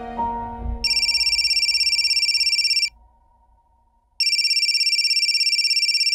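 Mobile phone ringtone: an electronic trilling ring, sounding twice, each ring about two seconds long with a short quiet gap between. Background music fades out just before the first ring.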